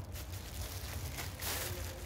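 Faint rustling of a plastic bag being handled, a little louder about a second and a half in.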